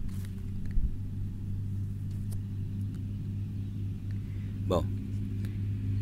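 Steady low hum of a running motor, even and unchanging, with a few faint clicks.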